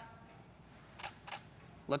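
Camera shutter firing: two quick clicks about a third of a second apart.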